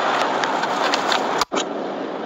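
Steady road and engine noise inside the cab of a Fiat Ducato van on the move, with a few faint ticks. The sound drops out for a moment about one and a half seconds in.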